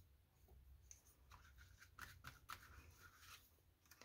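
Near silence, with a few faint, soft scratchy strokes of a flat paintbrush brushing over a paper cut-out on a collage board.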